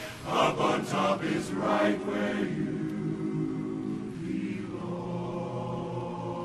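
Men's barbershop chorus singing a cappella: a few short, clipped phrases in the first two seconds, then a quieter held chord.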